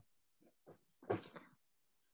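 Mostly quiet, with a short faint voice about a second in, like a pupil's brief reply over an online call.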